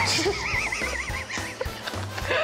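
A high, fast-quavering neigh-like call lasting about a second, over background music with a steady beat.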